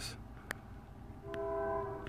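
A train horn sounding a steady chord of several notes, starting a little past halfway and held to the end. A single sharp click comes about half a second in.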